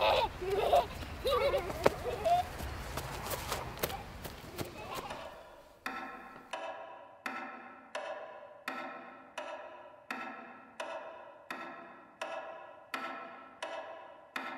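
Laughter for the first few seconds. From about six seconds in, a film sound-design effect takes over: a pitched, buzzy pulse repeating evenly about three times every two seconds, each pulse fading fast.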